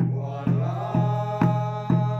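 A congregation singing a hymn together to a cylindrical hand drum (Mizo khuang) beaten at a steady pace of about two strokes a second.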